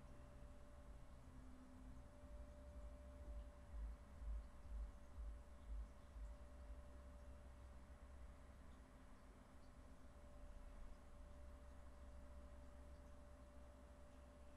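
Near silence: faint room tone with a thin steady hum and a few soft low thumps about four to six seconds in.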